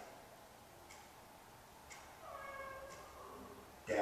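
A dog whines once, a short high-pitched cry under a second long about two seconds in. A wall clock ticks about once a second, and a louder sound starts right at the end.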